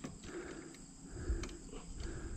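Faint, steady chirring of insects in woodland, with a couple of small clicks.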